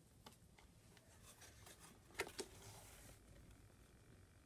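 Near silence: room tone with a few faint clicks, two slightly louder ones close together a little over two seconds in.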